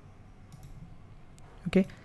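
Two faint computer mouse clicks, about a second apart, in an otherwise quiet stretch.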